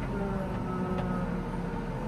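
A telehandler's diesel engine running steadily, heard from inside its cab as the machine moves slowly.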